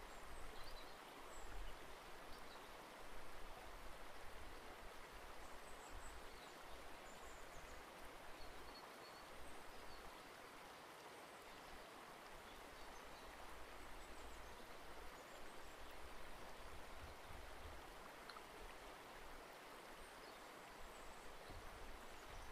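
Faint, steady hiss of room tone and microphone noise, with no distinct sound events.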